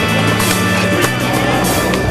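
Skateboard tricks on a ledge and rail: wheels rolling and grinding, with a sharp board clack about a second in and another near the end, under loud background music.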